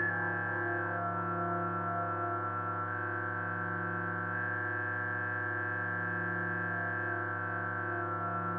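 Ambient drone music of held, effects-laden tones: a steady low hum that swells and fades slowly beneath a high sustained note that shifts pitch a few times.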